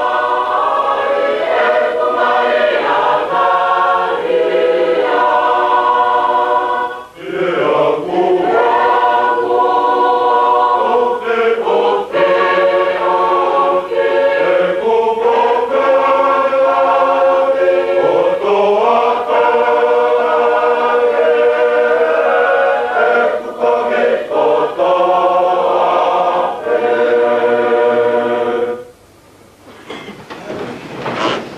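A large choir of Tongan students singing together, with a short break about seven seconds in. The singing stops about a second before the end.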